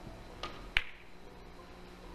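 Three-cushion carom billiards opening shot: a soft tap of the cue tip on the cue ball, then about a third of a second later a sharp, loud click as the cue ball strikes the object ball.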